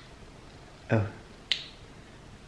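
A single sharp, snap-like click about a second and a half in, just after a short spoken "Oh".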